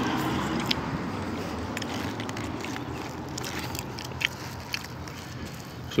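A person chewing a piece of fish, with a few soft mouth clicks, over a steady low background rumble.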